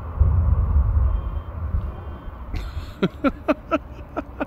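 Jet truck's jet engine running in afterburner: a loud, deep rumble that dies away about two seconds in.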